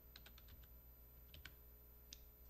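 Near silence with a quick run of faint clicks at the start and two more a little past the middle.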